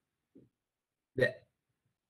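A man's voice saying one short clipped word after a pause, with a faint brief mouth or breath sound just before it; otherwise silence.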